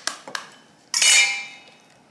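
An egg knocked against the rim of a stainless steel mixing bowl to crack it: a few light taps, then one sharp knock about a second in that leaves the bowl ringing briefly.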